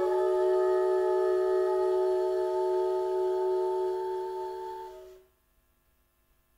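Big band with voice holding a sustained final chord of several notes, which fades and stops about five seconds in.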